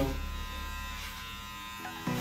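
Electric hair clippers running with a steady hum while cutting hair over a comb (clipper-over-comb tapering of a fade). The hum shifts slightly near the end.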